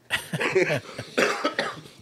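A man coughing and laughing in several short, breathy bursts.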